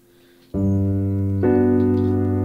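Native Instruments 'The Giant' sampled piano in Kontakt playing two chords, about a second apart, with a MIDI sustain pedal (controller 64) held on, so the first chord keeps ringing under the second.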